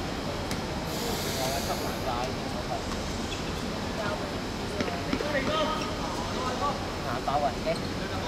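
Scattered, distant calls and talk of people at a football pitch over a steady outdoor background noise, with a brief hiss about a second in.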